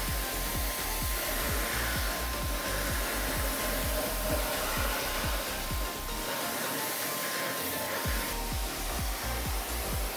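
Pressure washer jet spraying water onto a car's grille and front bumper: a steady rushing hiss.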